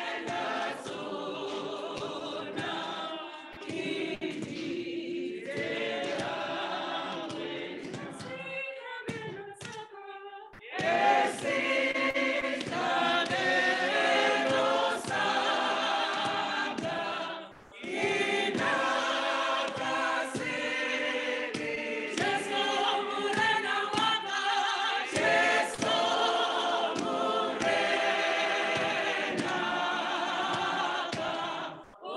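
A church choir singing a hymn, many voices in harmony. Around nine seconds in it thins to a single wavering voice, then the full choir comes back in louder, with a short break near eighteen seconds.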